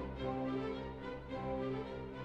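Orchestral classical music playing softly, with long held notes.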